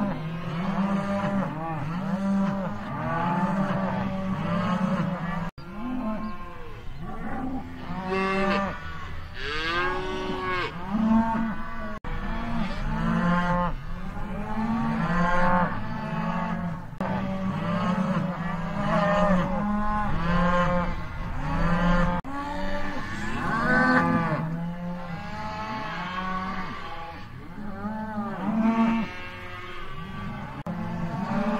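Cattle mooing: many overlapping moos, each rising and falling in pitch, one after another throughout, broken by a few brief cuts in the sound.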